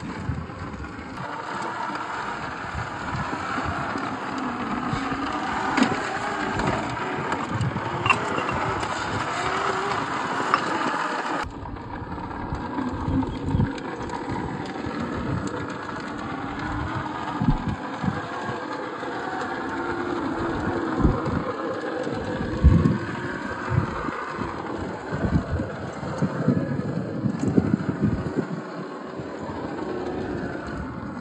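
Traxxas TRX-4 1/10-scale RC crawler working over rock: its electric motor and geared drivetrain whir while the tyres scrape and the truck knocks against stone in many short thumps. The sound changes abruptly about a third of the way in.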